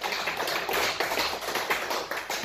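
Applause from a small audience: many scattered, irregular hand claps.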